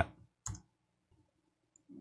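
A single computer keyboard keystroke about half a second in, the Enter key sending a typed command, then quiet.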